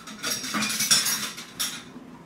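A small plate scraping and knocking on a high-chair tray as a toddler's hands grab orange segments from it, a quick run of clatters and rubs that stops near the end.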